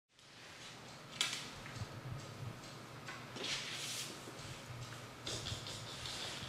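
Soft scrapes and rustles of a pet skunk scuffling and being slid about on a rug and hardwood floor, with a sharp click about a second in.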